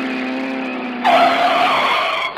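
A held note of the backing music dies away, then about halfway through a recorded tyre-screech sound effect comes in suddenly and loudly, like a car skidding to a stop.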